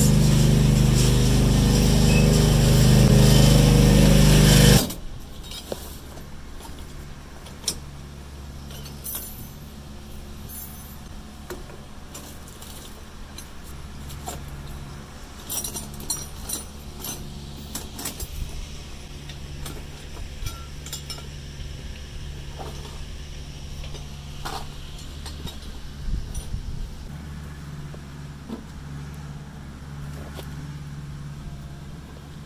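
An engine idling steadily, loud for about the first five seconds, then dropping suddenly to a quieter steady hum, with scattered light clicks and knocks on top.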